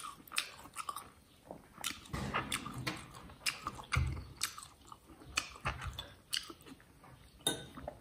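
Close-up mouth sounds of a man chewing and biting pork off the bone: irregular wet smacks and short clicks, in uneven bursts.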